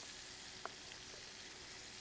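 Spice-coated fish fillets frying in oil in a pan, a faint steady sizzle, with one small tick about two-thirds of a second in.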